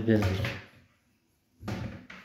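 A man's voice trails off, then about a second and a half in the doors of a kitchen sink base cabinet are pulled open with a short clack from their hinges.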